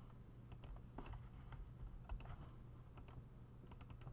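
Faint clicking of computer keys and mouse buttons while text is selected and formatted with keyboard shortcuts: about a dozen short clicks, several in quick pairs, over a low steady hum.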